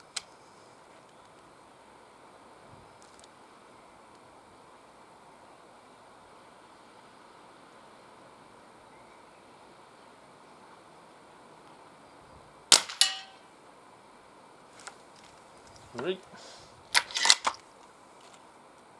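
Diana Mauser K98 .22 underlever spring-piston air rifle firing once, about two-thirds of the way in: a single sharp crack with a short ring, and a second knock a split second later. A cluster of loud clacks follows near the end.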